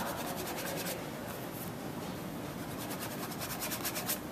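Paintbrush rubbing oil paint onto canvas in quick, scratchy strokes, heaviest in the first second and again near the end.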